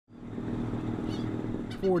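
A boat's engine running at a steady pitch, a low hum with a firm, even tone. A man's voice begins right at the end.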